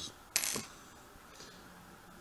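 A brief, high metallic clink about a third of a second in: a gold ring being handled and set down on a wooden tabletop.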